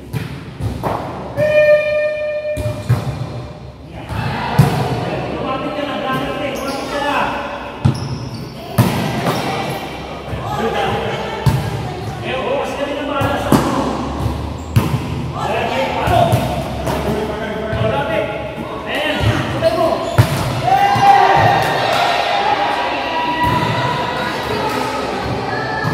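Volleyballs thudding irregularly as they are hit and bounce on the court floor of a large sports hall, among players' voices.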